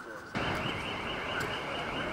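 Electronic alarm warbling quickly and steadily, starting abruptly about a third of a second in, over a wash of outdoor noise.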